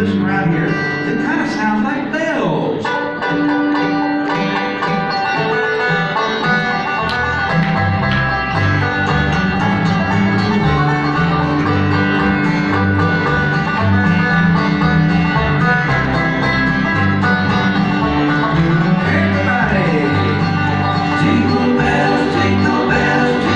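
Live bluegrass band playing plucked acoustic guitar and upright double bass. The lighter picking comes first, then deep bass notes come in about seven seconds in and carry a steady beat to the end.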